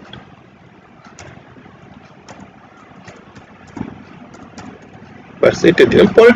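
Faint computer-keyboard keystrokes: a loose run of light clicks as a short name is typed, over a low background hiss. A man's voice comes back in near the end.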